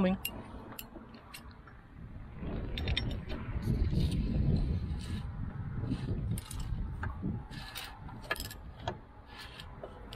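Scattered light metallic clicks and scrapes as the Mercruiser Bravo 3 bearing carrier is worked by hand off the prop shaft and out of the outdrive housing. A low rumble runs through the middle of it.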